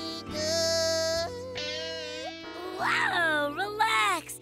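Children's-show music: a voice sings long held notes without clear words over a steady sustained backing. Near the end comes a wavering phrase that falls in pitch.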